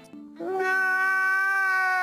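A man's long, high wailing cry: a brief lower note, then about half a second in a jump up to one steady held pitch.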